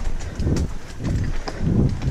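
Mountain bike rolling fast down a rough dirt trail: the tyres run over stones and roots, and the bike knocks and rattles with sharp clicks. Gusts of wind rumble on the microphone.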